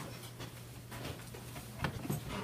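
Faint footsteps and movement in a small room over a steady low hum, with one sharp knock near the end.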